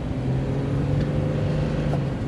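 Jeep Cherokee XJ's engine and road noise heard from inside the cabin while driving: a steady low hum with a couple of faint clicks.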